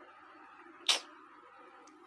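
A pause in speech: faint room tone with one short, sharp click-like noise about a second in.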